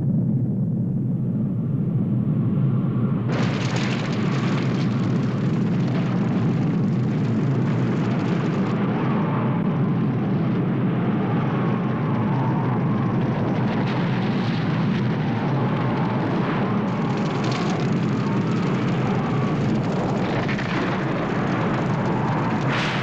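Film sound effect of a nuclear blast and the fire that follows: a loud continuous low rumble that gains a harsh rushing hiss a few seconds in, then holds steady.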